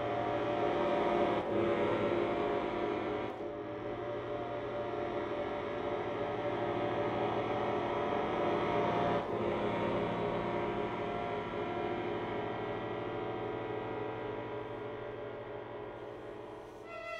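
Bayan (Russian chromatic button accordion) holding a sustained, dense chord, with brief breaks about a second and a half, three and a half and nine seconds in.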